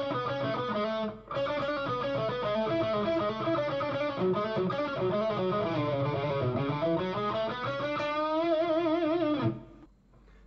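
Telecaster-style electric guitar playing a quick lead lick of single notes, with a short break about a second in, ending on held notes with vibrato that stop shortly before the end.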